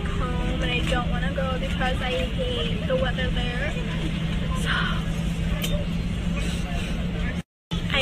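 Steady drone of an airliner's cabin noise, engines and air vents, with a constant low hum, under a woman's talk in the first half. The sound cuts out for a moment near the end.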